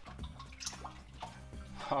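Water sloshing and splashing in a bucket as a sawn ammonite fossil half is dipped and rinsed by hand.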